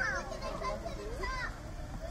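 Children's voices talking and calling out, with other people chatting in the background.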